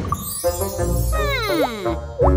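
Cartoon sound effects over light background music: a sparkly twinkling chime, then a sliding tone that falls steeply in pitch from about a second in.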